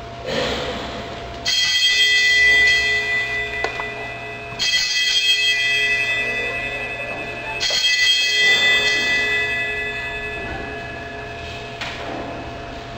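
Altar bells rung three times, about three seconds apart, each ring a bright jangle of several high tones that dies away: the signal for the elevation of the chalice at the consecration of the Mass.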